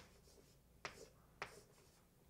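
Chalk writing on a blackboard, faint: a few sharp taps as the chalk meets the board, with short scratchy strokes after them.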